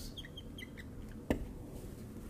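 Dry-erase marker squeaking on a whiteboard in a few short strokes, then one sharp click a little past a second in.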